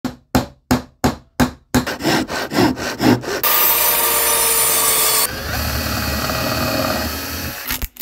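Woodworking tool sounds: a hand saw cutting in quick, regular strokes, about three a second, then faster, followed by a power tool running steadily. The power tool's sound changes about five seconds in, losing some hiss and gaining a deeper rumble.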